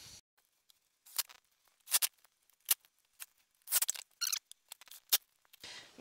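Light, scattered clicks and knocks of plywood parts being handled and fitted into a plywood console frame, with a short scraping rub about four seconds in.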